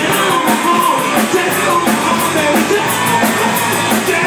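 Live rock band playing loud: electric guitars, bass guitar and drum kit, with a steady run of cymbal hits keeping the beat.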